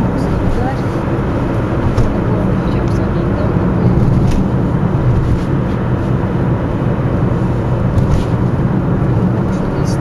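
Car driving, heard from inside the cabin: a steady low rumble of engine and tyre noise.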